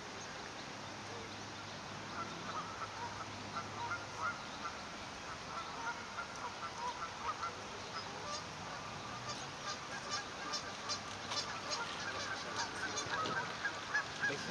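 Newly hatched mute swan cygnets peeping: many short, high calls that begin about two seconds in and grow busier toward the end.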